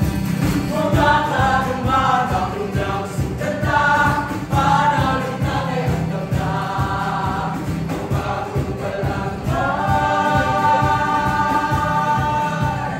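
A group of voices singing a song together over a steady low accompaniment, in short phrases, ending in one long held note near the end.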